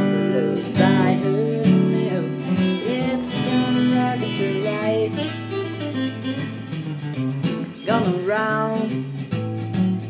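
Guitar playing a rock'n'roll instrumental break between sung verses.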